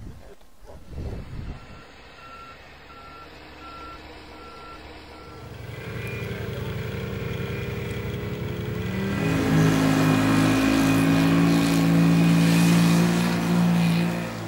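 A reversing alarm beeps about six times, evenly spaced, then a snowmobile engine comes in and revs up about 9 s in, holding a steady higher note, loudest near the end.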